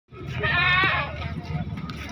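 A goat bleating once, a wavering call of about half a second near the start, with people talking around it.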